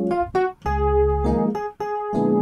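Electric piano tone ('Water EP' from a Kontakt gospel sound pack) playing gospel-style extended chords over low bass notes, in short phrases broken by two brief gaps.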